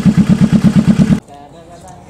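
Kawasaki Vulcan S's 649 cc parallel-twin engine idling through its modified exhaust, a loud, steady, lumpy beat of about ten pulses a second that cuts off suddenly just over a second in.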